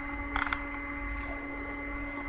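Quiet room tone with a steady low hum and a faint high whine, broken by a few soft clicks about half a second in and once more a little after a second, in keeping with a computer mouse scrolling a document.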